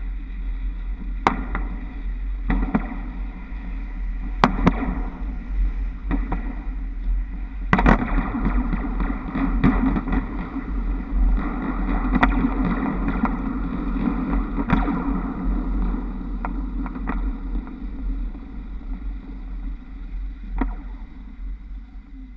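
Wind rumble and running noise on a camera on the roof of a moving trolleybus, next to the trolley poles on the overhead wires, with scattered sharp clicks and knocks. Loudest in the middle, it dies down near the end as the trolleybus slows for a stop.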